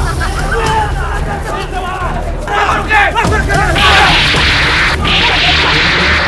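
Several people shouting and yelling over one another in a physical scuffle. In the second half there are two loud noisy rushes, each about a second long, that start and stop abruptly.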